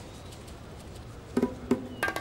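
A steady, low background hiss, then two short pitched notes near the end as background music comes in.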